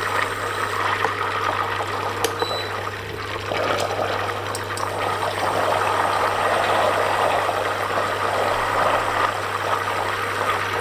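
Butter sizzling and bubbling steadily in a stainless steel saucepan as it melts and cooks towards brown butter (beurre noisette), with its water boiling off; a silicone spatula stirs through it. The sizzle grows a little louder in the second half.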